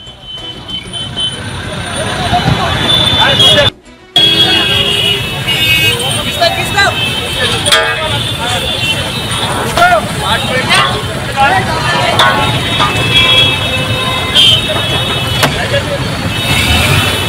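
Crowd of people talking over one another amid road traffic, with car horns honking. The sound builds up over the first couple of seconds and cuts out briefly about four seconds in.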